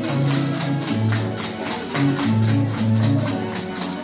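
Andean harp music: a plucked melody in low, resonant notes over a steady, evenly spaced high jingling beat.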